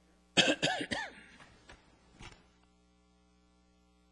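A person's short vocal outburst, under a second long, with the pitch rising and falling, about a third of a second in. Two faint knocks follow, then a quiet room with a steady electrical hum.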